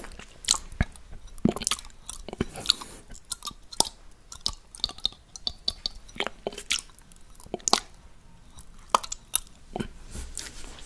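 Close-miked wet mouth sounds of a tongue licking the inside of a glass shot glass: irregular smacks and sharp clicks, several a second, with short pauses between.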